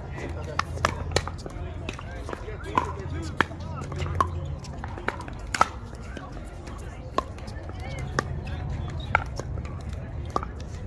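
Pickleball doubles rally: sharp pocks of paddles striking the plastic ball and the ball bouncing on the hard court, coming irregularly about every half second to a second, over a low wind rumble on the microphone.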